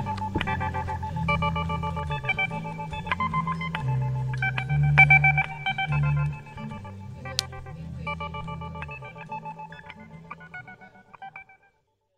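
Guitar and bass playing a short song's ending: plucked guitar notes over a bass line. The bass stops about six seconds in, a single click follows, and the guitar plays on softly and fades out near the end.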